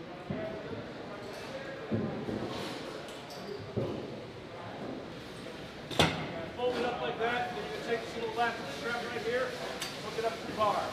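Indistinct murmur of voices and gear-handling knocks in a large, echoing hall, then one sharp knock about six seconds in, the loudest sound, followed by a man talking.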